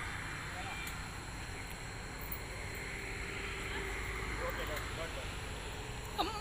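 Steady outdoor background noise with a low rumble, and faint distant voices now and then.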